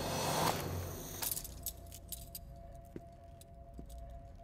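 A swell of rushing noise that breaks off about a second in. It is followed by scattered light metallic clinks and jangles over a faint held tone.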